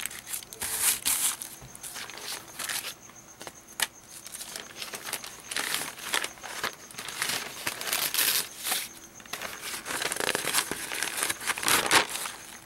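Sheets of thin printed paper rustling and crinkling as they are lifted, shuffled and turned over by hand, in irregular bursts.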